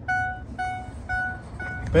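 Ford F-350 Super Duty's cab warning chime beeping steadily, about two short tones a second.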